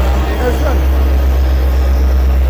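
Diesel engine of a road roller running with a steady low drone.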